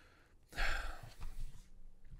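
A man's sigh into a close microphone: one breathy exhale starting about half a second in and fading away.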